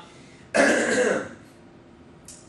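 A man clearing his throat once, a short rough sound lasting under a second, beginning about half a second in.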